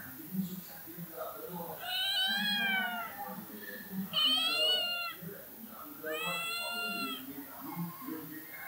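A cat meowing three times, each meow long and drawn out, about a second, rising then falling slightly in pitch.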